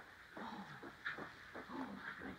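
A small dog making a few short whining calls, one of them falling in pitch.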